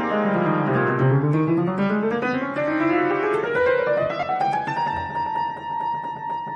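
Upright piano playing a quick run of notes that sweeps down to the low register and then climbs back up, settling on a high note that is held.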